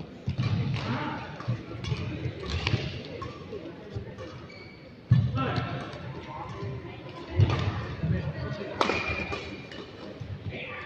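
Badminton play: a series of sudden hits and thuds, the loudest about five seconds in, with indistinct voices around them.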